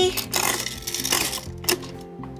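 A quarter dropping into a coin-operated chicken-feed dispenser and its knob being turned, making several short clicks and rattles, over background music.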